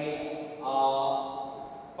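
A man's voice speaking Telugu into a microphone, drawing out one long vowel on a level pitch for about a second.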